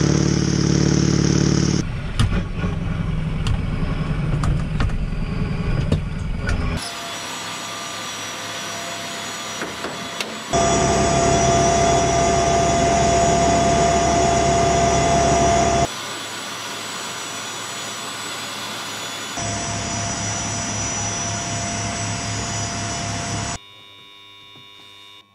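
Heavy Iskander missile launcher vehicle running: its engine rumbles as it drives, then steady machinery noise with a high steady whine around the raised launcher. The audio cuts abruptly between louder and quieter stretches.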